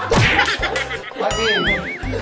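Added comedy sound effects over a music beat: a quick falling whoosh just after the start, then a ding about a second and a half in, followed by a warbling tone that wobbles up and down about three times.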